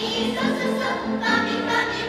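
A middle-school choir of young voices singing in parts over a low note repeated about four times a second; a little past the middle they move onto held chords.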